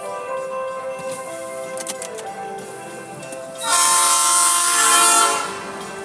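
Freight train horn sounding for about two seconds about halfway in, much louder than the background music that plays throughout.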